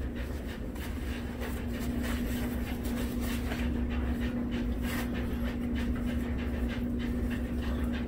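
Kitchen shears snipping through raw bacon: a few separate sharp snips, one of them about five seconds in, over a steady low hum.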